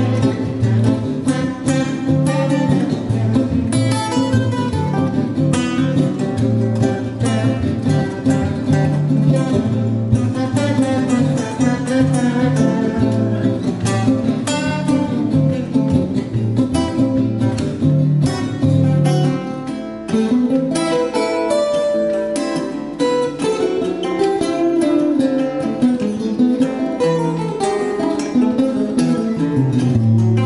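Two Baffo acoustic guitars, an archtop and a small-bodied flat-top, played together in a duet: strummed chords under a picked melody. About twenty seconds in, the deep bass notes drop out and a higher picked melodic line carries on over lighter accompaniment.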